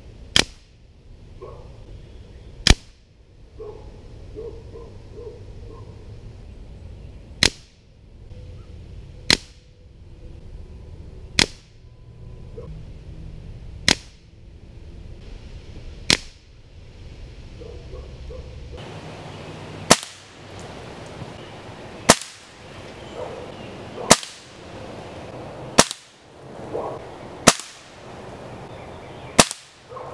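A .22 Diana Mauser K98 spring-piston air rifle firing pellets, about thirteen sharp single shots spaced roughly two seconds apart.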